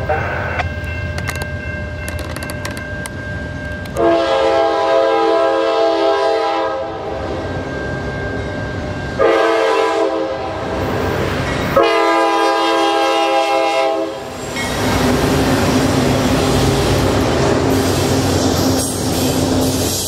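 Norfolk Southern diesel freight locomotive sounding its air horn in three blasts, the first about three seconds long and the others shorter. The locomotive then passes close with its engine running, and the freight cars roll by with wheel clatter.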